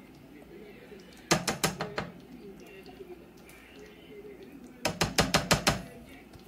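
A spatula clicking and scraping against a jar as cheese sauce is scooped out. There are two quick runs of clicks, one about a second in and one near the end.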